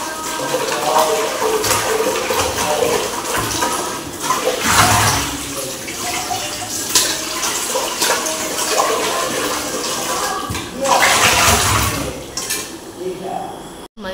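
Water running and splashing from a tap over steel pots and dishes being washed, with louder gushes about five seconds in and again near eleven seconds.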